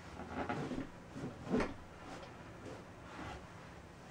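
Faint handling noises as an upturned wooden coffee table is shifted into line on cushion padding: a few soft knocks and rubs, the clearest about one and a half seconds in.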